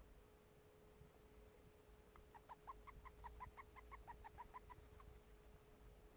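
Syrian hamster making a faint, rapid run of short squeaks, about five or six a second for some three seconds, as she sniffs. It is an odd squeak that comes with her sniffing, with no sign of injury or trouble breathing behind it.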